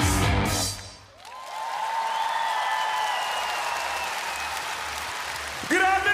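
A live rock band's song ends about a second in, and the concert-hall audience applauds. A long held tone carries on over the applause.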